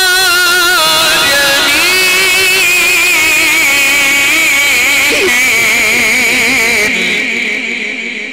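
A male Quran reciter's voice through a loudspeaker system, holding one long melismatic note with a wavering vibrato in the mujawwad (tajweed) style. The pitch climbs about a second and a half in and stays high. The voice ends about seven seconds in, and a strong echo dies away after it.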